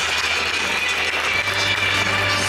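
Football stadium ambience: steady crowd noise with music faintly in the background.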